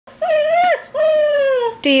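A whippet–lurcher cross whining: two long, high-pitched whines, the second sliding a little down in pitch. She is crying to be taken for a walk.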